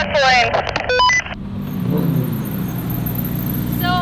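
2023 Corvette Z06's 5.5-litre flat-plane-crank V8 idling steadily, briefly rising and falling in pitch about two seconds in.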